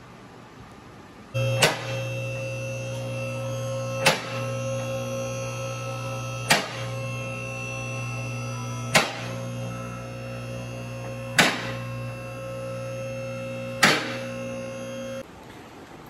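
Two-post car lift in operation: its electric hydraulic power unit hums steadily, with a sharp click about every two and a half seconds. The hum starts about a second in and cuts off abruptly near the end.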